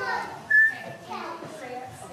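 Young children chattering while they line up, with a brief, high whistle-like tone about half a second in that is the loudest sound.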